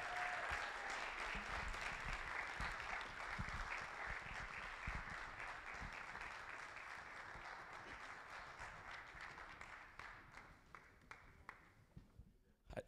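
Audience applause that slowly fades, dying away about ten seconds in.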